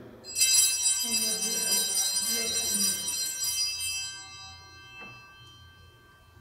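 Altar bells shaken at the elevation of the chalice during the consecration: a bright, jingling cluster of bell tones that starts just under half a second in, rings for about three and a half seconds, then fades away.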